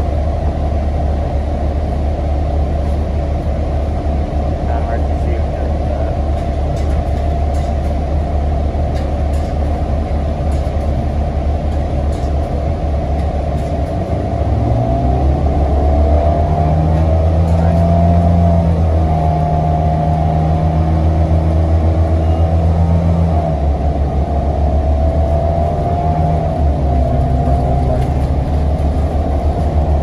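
Inside the cabin of a NABI 42-BRT transit bus under way: a steady engine and road rumble. About halfway through, the engine note rises in pitch and grows louder as the bus accelerates, holding at a few steps as it works up through the gears.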